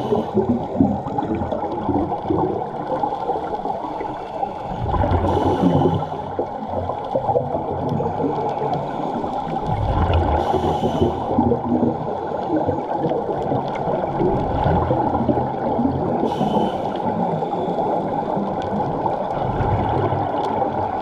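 Underwater water noise with a burst of scuba exhaust bubbles about every five to six seconds, the rhythm of a diver's breathing.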